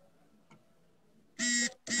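A pause in a man's talk, nearly silent, broken about one and a half seconds in by a short, steady held vocal hesitation sound (an 'é') in his voice.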